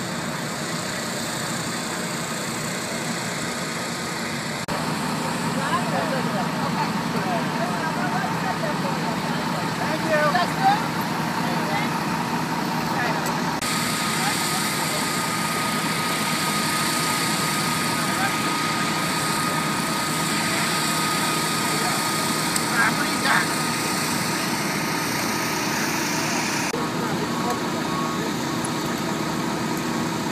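Fire truck engines running steadily at a fire scene, with indistinct voices in the background and a steady thin whine through the middle stretch.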